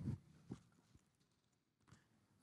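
Near silence: the last of a man's speech trails off, then a faint click, then silence.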